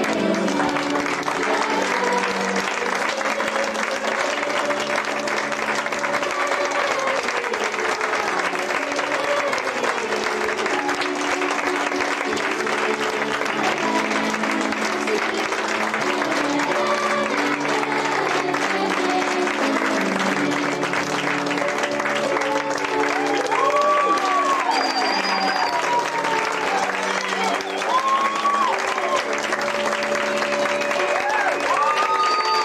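Audience applauding steadily over instrumental music.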